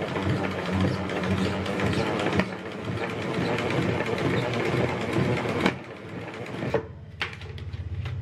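Plastic salad spinner turned by its top knob, whirring steadily with a geared, ratchety rattle as it spins water off washed lettuce. It stops abruptly a little over halfway through, followed by a few sharp plastic clacks.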